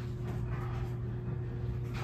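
Steady low hum with a faint, higher steady tone over it: background room tone, with no distinct event.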